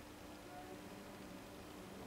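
Beer pouring from a can into a glass: a faint, steady trickle.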